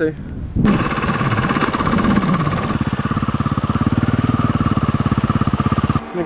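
Dirt bike engine running, with a fast, even firing pulse that starts abruptly about half a second in.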